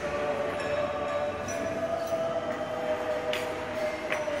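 A steady mid-pitched hum that drifts slightly in pitch throughout, over restaurant room noise, with a light clink near the end.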